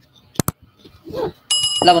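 Subscribe-button animation sound effect: a quick double mouse click, then a bright notification-bell ding that starts about one and a half seconds in and rings on under a man's voice.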